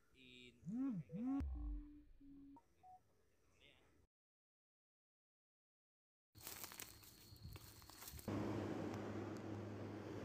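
A short voice-like sound with a swooping pitch, a low thud, and two brief steady beeps, then silence; faint steady hiss and hum return near the end.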